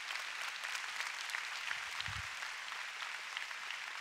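Congregation applauding: many hands clapping at once, holding steady.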